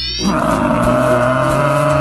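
A long animal roar sound effect, held at a steady pitch for about a second and a half, over background music. A rising whistle effect ends just as the roar begins.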